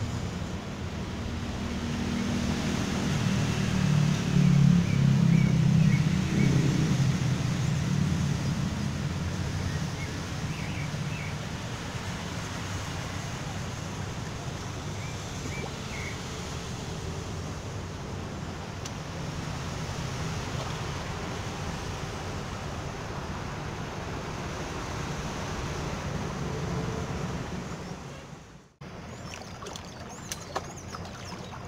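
Sea waves washing on the shore with wind on the microphone, a low rumble swelling for several seconds near the start. The sound drops out briefly near the end.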